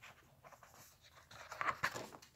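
Cardboard cover and paper pages of a spiral-bound art book being handled and turned: faint rustling, with a few louder rasping strokes near the end.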